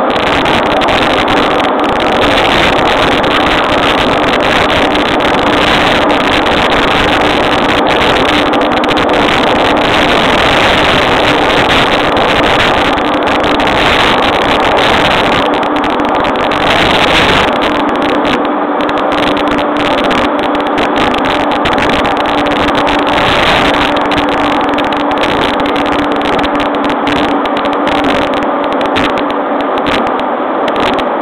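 Cabin running noise of a JR East E231-series electric commuter train at speed, heard from inside a motor car: wheels on rail and a steady motor hum. The deep rumble thins out a little past halfway while the hum carries on.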